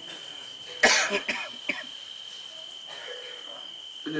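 A man coughs once, sharply, close to the microphone about a second in, followed by a little throat clearing.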